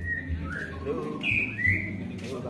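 A bird chirping outdoors: several short gliding calls, the loudest two near the middle and shortly before the end.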